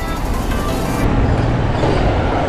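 Street traffic noise with a steady low rumble, heard while moving along a busy road.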